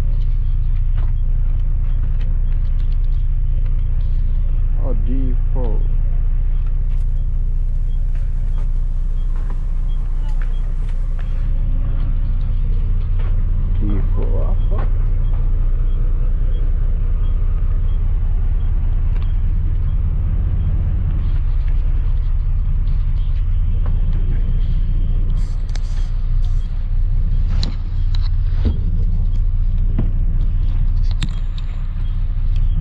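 Coach bus engine running, heard from inside the passenger cabin as a steady low rumble.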